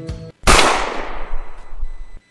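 A single gunshot: one sharp crack about half a second in, followed by a long fading echo.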